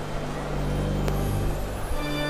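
Electronic organ holding a steady low chord, with higher notes joining partway through; a single sharp click about a second in.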